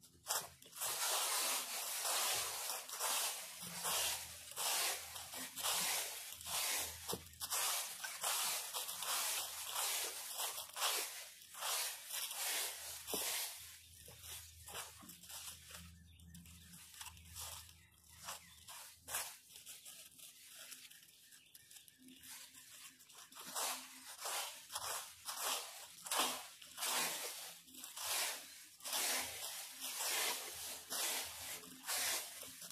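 Small plastic rake dragging through dry leaf litter, crunching in repeated short, irregular strokes, with a quieter stretch of several seconds around the middle.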